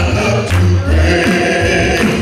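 Gospel music: a group of male voices singing together, with held notes and a deep bass line under them.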